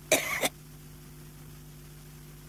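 An elderly woman coughs once, a short burst of about half a second just after the start, into a microphone over a faint steady hum from the recording.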